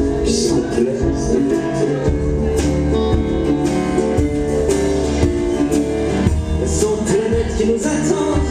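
Live band music: a nylon-string acoustic guitar played over a drum kit with cymbals, at a steady full level.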